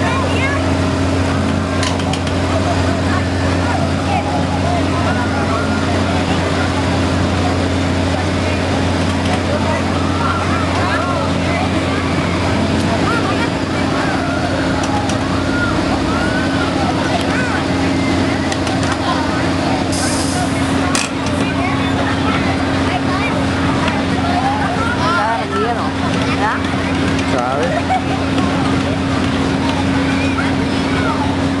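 Steady, loud low drone of fairground machinery running, with crowd chatter over it. A short hiss comes about twenty seconds in.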